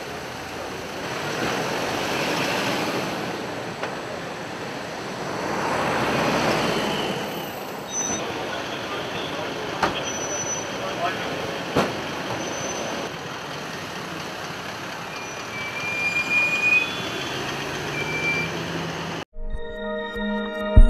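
Outdoor ambience of vehicle noise and background voices, with the vehicle noise swelling twice in the first several seconds and a few sharp clicks later on. Near the end it cuts off suddenly into outro music.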